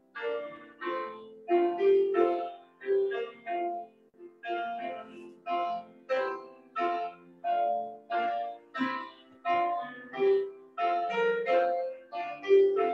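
Instrumental prelude music heard over a video call: a steady run of struck notes, each fading after it sounds, about two notes a second.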